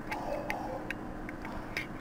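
Computer mouse clicking as the page scrolls: about five short, quiet clicks, roughly one every half second, over a faint steady hum.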